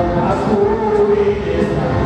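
A choir singing with musical accompaniment, voices holding long notes.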